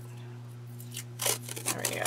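Red washi tape being peeled off its roll in a few short rasping pulls, starting about halfway through, over a steady low hum.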